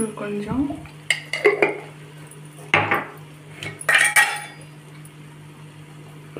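Slotted steel spatula scraping and clinking against an aluminium pot while stirring a thick gravy, in three short bouts.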